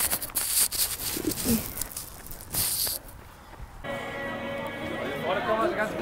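Wind and rustling on a handheld phone's microphone while a runner moves. About four seconds in, the sound changes sharply to music played over a public-address loudspeaker.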